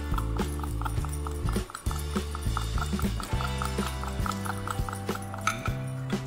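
Background music with a moving bass line and a quick, even knocking beat, about three to four knocks a second.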